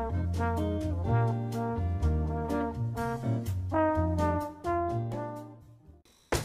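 Intro music: a melody of pitched notes over a bass line and a steady ticking beat, fading out near the end.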